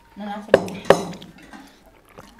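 Two sharp clinks of tableware, plates or cutlery knocking against a plate, about a third of a second apart, after a short hum of a voice.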